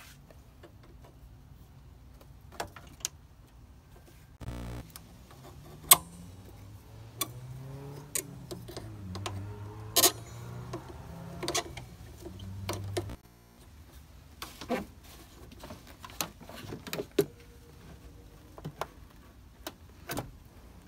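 Scattered clicks and light metal knocks of hands and tools working the hose clamps on an engine's upper coolant hose. A low wavering hum starts about a quarter of the way in and cuts off suddenly past the middle.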